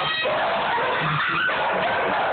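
Dogs barking and yipping during rough play-fighting.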